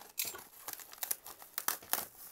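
Foil-faced bubble-wrap insulation and paper wrapping of a parcel crinkling and crackling as hands pull them open, in a quick run of irregular sharp crackles.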